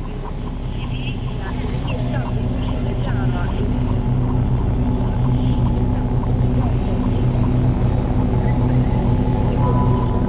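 Live electronic music from synthesizers: a low droning tone with a slight pulse, with warbling, chirping glides above it and faint high ticks, growing steadily louder.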